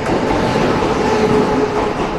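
A TRA PP Tze-Chiang (E1000-series push-pull) express train running past at close range: its electric power car and coaches rumbling along the rails with a steady hum.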